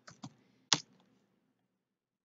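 Computer keyboard keystrokes: three short clicks within the first second, the third the loudest, as a web search query is typed and entered.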